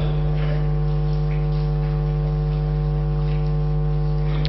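Steady low electrical hum with a stack of evenly spaced overtones, unchanging in pitch and level: mains hum picked up through the microphone and sound system.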